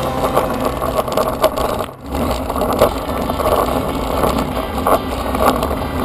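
Wind rushing over the microphone with road noise from a bicycle riding a mountain road, a steady rumble that drops out briefly about two seconds in.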